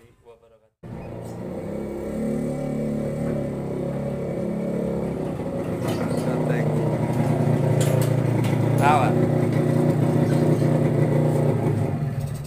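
Small motorcycle-type engine of a motorized cart running steadily, cutting in abruptly about a second in and growing louder as the cart comes close.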